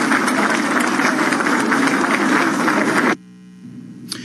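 Crowd applauding in a large hall, a dense steady clatter of many hands, cut off abruptly a little after three seconds in.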